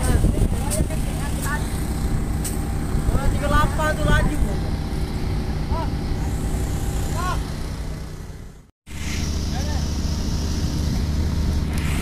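A vessel's marine diesel engine running steadily with a low hum, with voices calling over it. The sound drops out briefly about nine seconds in, then the engine hum comes back.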